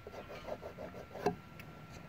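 Faint rubbing of a fingertip on a dirty painted metal VIN tag, with light scattered ticks and one sharper click about a second in.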